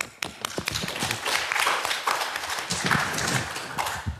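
A small audience clapping in a lecture theatre. The applause builds about half a second in and dies away near the end.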